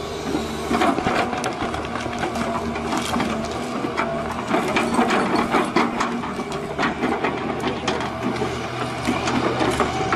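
Crawler excavator's diesel engine running steadily under load while its stump-pulling attachment tears a stump out of the ground, with many irregular cracks and snaps of splitting wood and roots.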